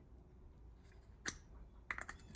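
Two faint sharp clicks, about half a second apart near the middle and end, as a steel LS roller lifter is pushed into a tight-fitting GM plastic lifter tray.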